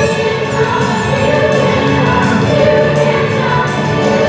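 Young performers singing together as an ensemble in a musical-theatre number, over steady instrumental accompaniment.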